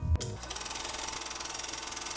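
Section-transition sound effect: a brief thump, then a steady, fast mechanical rattle like a running film projector or sewing machine.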